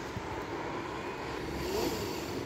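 Steady hum of distant city traffic, swelling slightly near the end.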